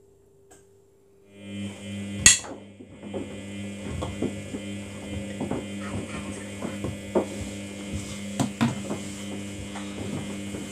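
Samsung front-loading washing machine's drum motor starting up about a second in with a steady hum, tumbling a wet load of clothes with repeated knocks; one sharp, loud knock comes about two seconds in.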